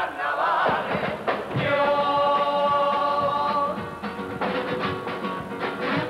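A carnival murga's male chorus singing to instrumental accompaniment. For about two seconds in the middle the group holds one long note together.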